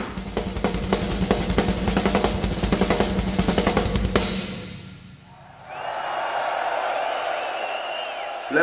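Live rock drum kit played fast, with rapid bass drum, snare and cymbal strokes, fading out about four to five seconds in. A steady noisy haze with a faint high tone follows.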